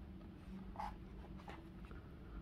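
Faint scratching and rubbing of fingers handling a small cardboard box as it is turned in the hand, a couple of short scuffs over a low steady hum.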